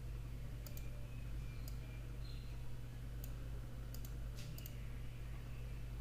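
Computer mouse clicking, about eight short sharp clicks scattered irregularly, some in quick pairs, over a steady low electrical hum.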